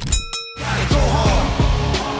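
A brief ringing metallic ding that cuts off after about half a second, then loud upbeat music with a steady bass line.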